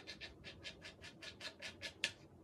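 Quick, even scratching strokes of a hand tool worked across a leather piece, about eight strokes a second.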